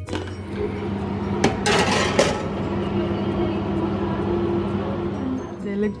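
Metal baking tray clinking and scraping as it is handled, loudest in a short clattering burst about two seconds in, over a steady low hum.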